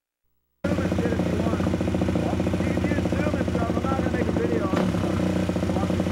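Suzuki motocross bike with a Bill's Pipes exhaust, its engine running steadily at one even pitch without revving. It comes in abruptly about half a second in.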